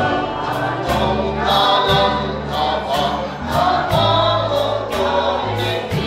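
Mixed choir of men and women singing a gospel hymn, over accompaniment with a held bass line and a steady beat of about two strikes a second.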